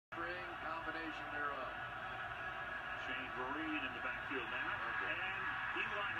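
Television broadcast of an NFL game heard through a TV speaker: a commentator's voice over steady stadium crowd noise.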